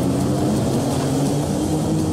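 A car driving off with its engine running steadily, a low even hum under a steady hiss of road noise.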